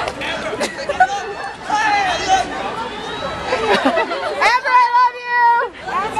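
Several people talking over one another in a crowd. Near the end, one high voice holds a single steady note for about a second.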